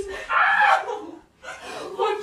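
A girl's brief, loud cry about half a second in, then softer voice sounds.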